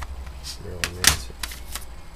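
Hard plastic CD and DVD cases clacking against each other as they are handled. There are several sharp clicks, and the loudest comes just after a second in.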